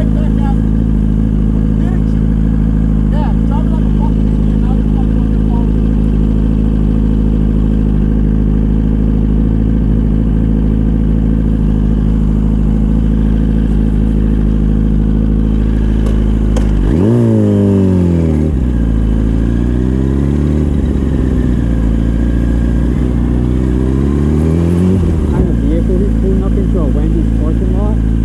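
Sport motorcycle engine idling steadily for about seventeen seconds, then revving as the bike pulls away: the pitch rises sharply, falls, dips briefly and climbs again over about eight seconds before dropping back to a steady idle near the end.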